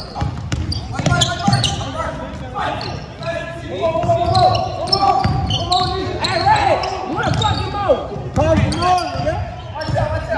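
Basketball dribbled and bouncing on a hardwood gym floor during a game, with players' shouts and calls in the large hall.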